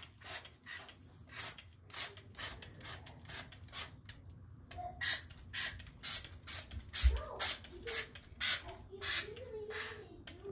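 Paper towel wiping and rubbing the dirty plastic chassis of an RC truck, a series of short scrubbing strokes that settle into about two a second after about five seconds.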